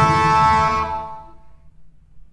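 Two Renaissance shawms holding a loud, reedy final chord that stops about a second in. The chord rings away briefly in the room's reverberation.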